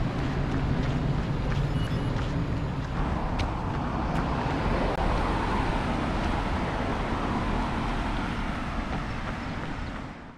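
Steady outdoor traffic noise with a low rumble, swelling in the middle as a car drives past.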